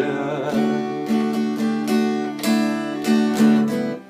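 Acoustic guitar strummed steadily, its chords ringing, about two strokes a second.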